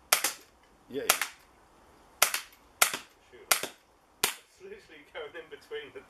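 Umarex Beretta 92 .177 CO2 BB pistol firing six shots in fairly quick succession, spaced unevenly about half a second to a second apart. Each shot is a sharp crack, and the last comes a little over four seconds in.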